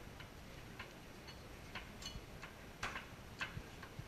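Light, irregular clicks and taps of glassware and bar tools handled at a bar counter, about seven over a few seconds, the loudest just before three seconds in.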